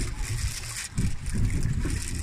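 Uneven low rumble of wind and sea noise on the microphone aboard a small fishing boat, with a faint hiss above it.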